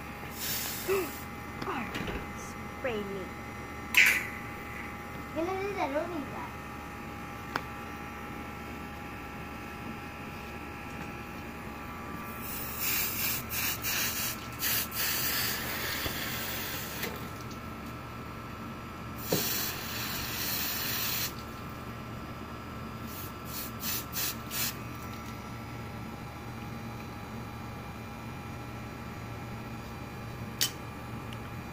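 A garden hose with a trigger spray nozzle spraying water onto a tabletop cutting board: a long hissing burst of about five seconds, a second of about two seconds, then a few short squirts.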